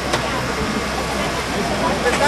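A steady engine hum, typical of the motor-driven power unit feeding a hydraulic rescue tool, running without change, with voices talking over it.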